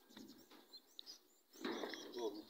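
Faint outdoor background with a couple of short, high bird chirps about the middle. A louder burst of noise comes in near the end.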